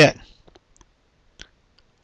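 A few faint, short computer mouse clicks, the clearest about one and a half seconds in, as buttons are pressed on an on-screen calculator.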